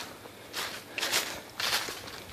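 Footsteps in dry fallen leaves, about three steps with leaf rustle between them.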